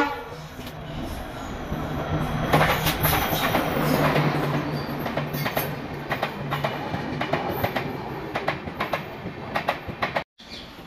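An Indian Railways passenger train runs past on the track beside the platform. A rumble builds from about two seconds in, with rapid clickety-clack of the wheels over the rail joints and a low steady drone underneath.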